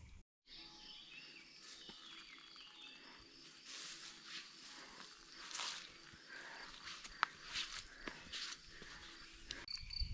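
Faint countryside ambience: a steady high insect trill, with soft rustling swells a few seconds in and one brief click.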